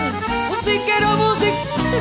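Live chamamé music: a woman sings over an accordion-led band, and the drum kit keeps the beat.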